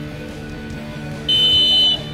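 Referee's pea whistle blown in one long, steady, shrill blast near the end, the half-time whistle, heard over background music.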